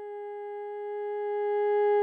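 Theremin holding one long, steady note, swelling louder toward the end.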